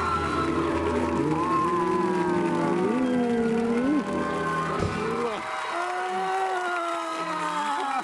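A live studio band plays while the audience applauds and cheers, with excited voices on top.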